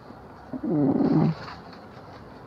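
A woman's short, rough, wordless vocal sound close to the microphone, rising then falling in pitch, lasting under a second.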